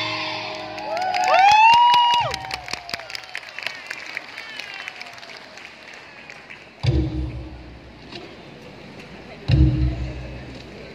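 Javanese gamelan music ends and a group of children's voices gives a shout about a second in, followed by several seconds of clapping from the audience. Two deep thumps come later, one near seven seconds and one near the end.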